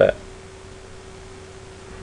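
The end of a spoken word, then a steady low hiss with a faint, even hum under it.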